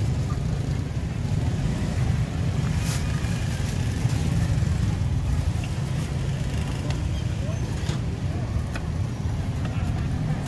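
A steady low rumble with faint voices underneath.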